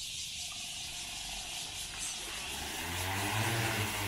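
DJI agricultural spray drone's rotors spinning up about three seconds in, a low multi-rotor hum that rises in pitch and grows louder as the drone lifts off. Insects chirr steadily in the background.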